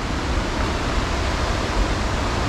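Steady rushing water, an even roar with no breaks.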